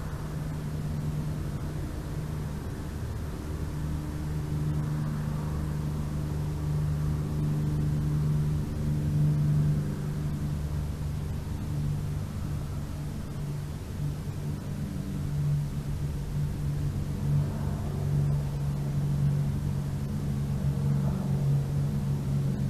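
A distant engine's low, steady drone with a hum and a rumble beneath, swelling slightly twice.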